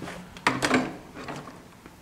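Clicks and rattles of a Toro TimeMaster lawn mower's grass bag and folding handle being handled, with a sharp click about half a second in and softer knocks after.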